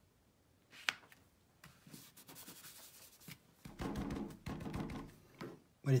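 Paper and card handled and pressed by hand on a wooden tabletop: one sharp click about a second in, then soft rubbing and rustling that grows louder in the second half.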